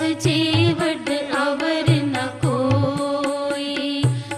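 Devotional kirtan-style music: a voice sings a melody, sliding between held notes, over a regular drum beat.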